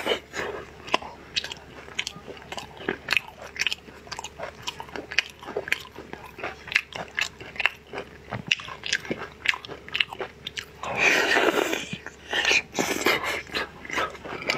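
Close-up mouth sounds of biting and chewing a crisp-coated mango ice-cream bar: many small sharp clicks and crunches, with two louder, longer bites or slurps near the end.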